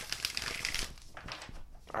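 A deck of oracle cards being shuffled and handled by hand: a soft, uneven rustle of sliding card stock with a few light snaps.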